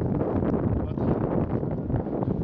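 Wind buffeting the microphone in a steady low rumble.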